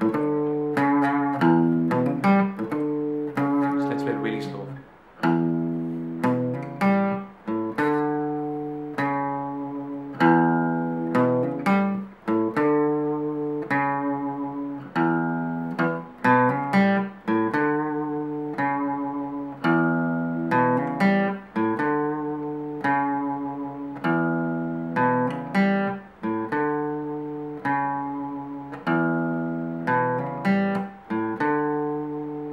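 Fender CD60E steel-string acoustic guitar playing a single-note riff: plucked notes, some hammered on and some held with vibrato, each ringing out, with the phrase repeated over and over.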